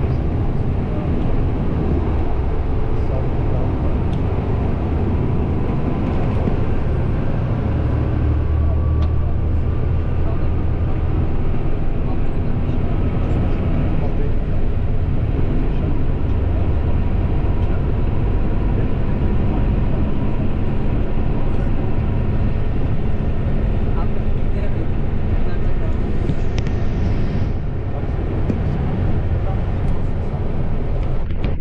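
Steady, loud low rumble of tyre and engine noise from a moving vehicle, heard from inside it as it drives along.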